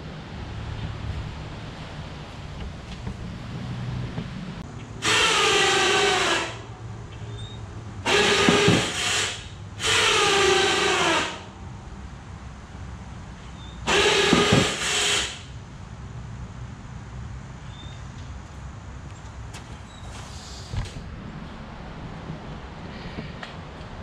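Electric winch on a Yamaha Grizzly 350 ATV running in four short bursts of a second or so each, raising and lowering the snow plow blade. Its motor whine drops in pitch during each run.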